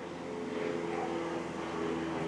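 A steady mechanical hum with several held low tones, like a motor or engine running in the background.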